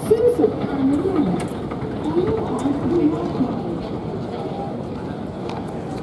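An indistinct voice, clearest in the first few seconds and then fading, over a steady background hum.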